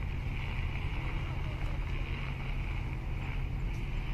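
Steady open-air harbour ambience: a low rumble of wind on the microphone with distant boat traffic, and a steady hiss in the upper range, with no distinct events.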